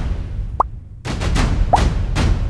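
Two short comic 'bloop' sound effects added in editing, quick rising pitch slides about a second apart, the first higher and longer than the second, over a low steady bass.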